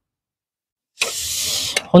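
Raw pork belly sizzling as it is laid onto a hot griddle pan: a steady hiss that starts about halfway in and lasts under a second.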